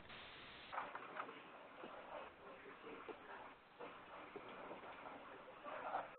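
Faint hiss of an open conference-call phone line, with a few weak clicks and bumps.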